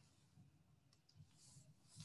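Near silence: room tone with a few faint clicks, about a second in and again near the end.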